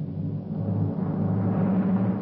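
A low rumble over a sustained deep chord, swelling steadily louder in a crescendo that leads into brass title music.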